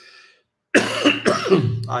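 A man coughing, with a loud sudden onset about three-quarters of a second in.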